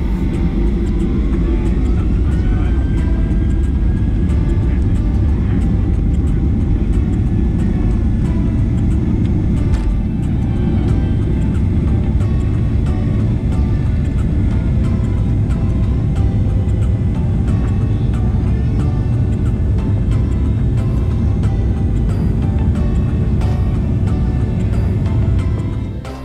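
Boeing 737's turbofan engines at takeoff thrust, heard from a cabin seat over the wing. A whine rises over the first few seconds as they spool up, then holds steady over a deep, steady rumble. The low rumble eases about ten seconds in as the aircraft leaves the runway and climbs.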